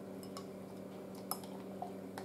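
Spatula stirring a thick polymer gel in a glass beaker, with a few faint clinks against the glass, over a steady low hum.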